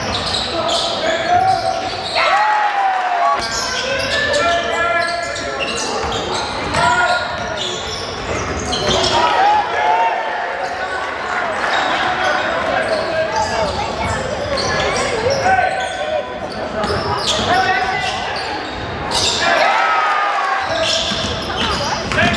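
Basketball game sound in a large echoing gym: the ball bouncing repeatedly on the hardwood court, sneakers squeaking and players and spectators calling out.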